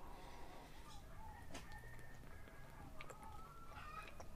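Faint chicken calls in the background: short, repeated clucking calls. A few soft clicks are heard as a glass bottle is drunk from.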